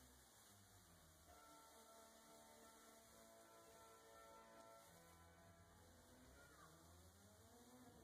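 Near silence, with very faint music behind it.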